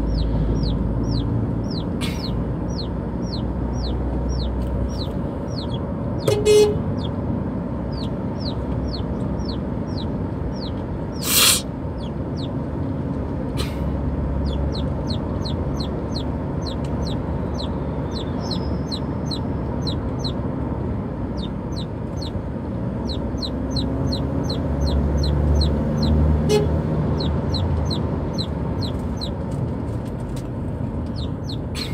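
Young Burma chicks peeping without pause, about three quick falling peeps a second, over the low rumble of a car driving, heard inside the cabin; the crying of chicks calling for their mother. A short vehicle horn toot about six seconds in is the loudest sound, with a brief burst of noise around the middle and a fainter short toot near the end.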